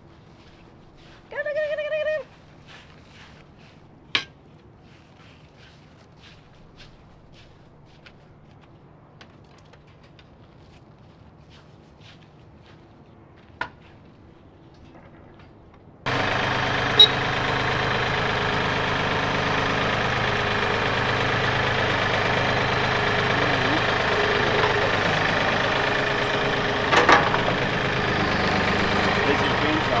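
Compact tractor engine running steadily, starting abruptly about halfway through. Before it the yard is fairly quiet, with a brief high-pitched call and a few sharp knocks.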